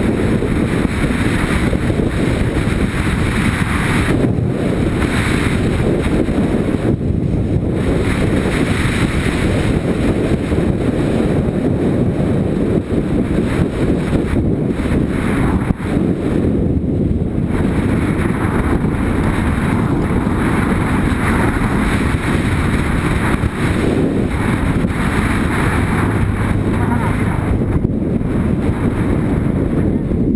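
Motorcycle riding at road speed, heard from a bike-mounted camera: heavy wind buffeting on the microphone over the steady running of the engine and tyres, easing briefly a few times.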